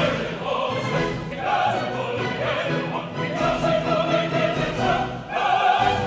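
Operatic singing by chorus and soloists with orchestra, in long held notes with vibrato.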